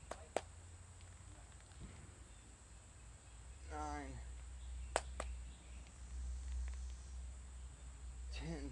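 A man's voice briefly counting a squat rep about four seconds in. Under it runs a low steady rumble that strengthens a little before the count, with a few sharp clicks just after the start and about five seconds in.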